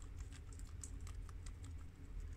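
Guinea pigs chewing crisp romaine lettuce: a rapid, irregular run of small crunching clicks, over a low steady hum.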